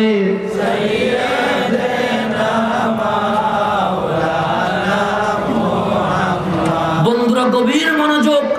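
A congregation of men chanting the salawat (durood) together, many voices blending into one drawn-out chant; near the end a single voice stands out again above the rest.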